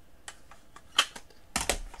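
Plastic cassette tape and its case being handled: a string of sharp plastic clicks and clacks, the loudest about halfway through, then a soft thump with a few rattles near the end.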